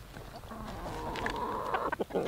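A flock of backyard chickens clucking softly as they gather around a feed bucket.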